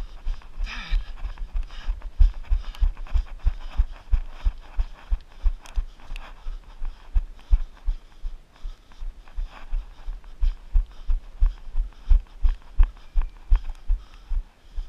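A runner's footfalls on a paved path, picked up by a body-worn camera as steady low thuds about three times a second.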